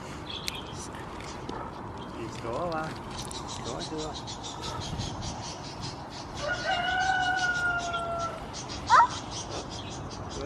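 A rooster crows once, a single call of about two seconds that falls slightly at the end, with shorter wavering calls a few seconds before it. Just after the crow comes a short, sharp rising squeak, the loudest sound here.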